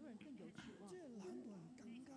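Faint speech: a man talking quietly, well below the level of the surrounding sermon.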